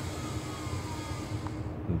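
UTO U921 quadcopter's motors winding down after a low-voltage cutoff brought it to the ground. There is a faint whine that falls in pitch, and the hiss fades out about one and a half seconds in, over a low steady hum.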